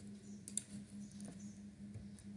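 A single computer mouse click about half a second in, with a few fainter ticks later, over a steady low hum.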